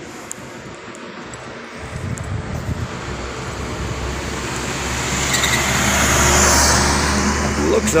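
A car drives past on the road, its engine and tyre noise swelling from about two seconds in, loudest around six and a half seconds, then easing off.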